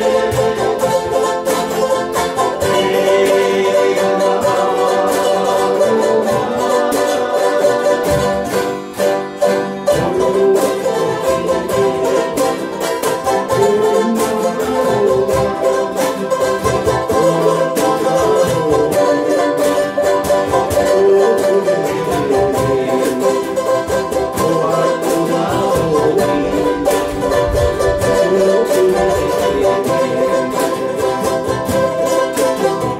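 Ukuleles and acoustic guitars strummed together in a steady rhythm: a small string band playing a song, with a brief drop in volume a little under a third of the way through.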